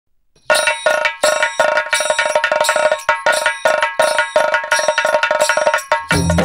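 Bell-like metallic percussion opening a Marathi devotional song: ringing strikes in a steady rhythm, about three a second, starting half a second in.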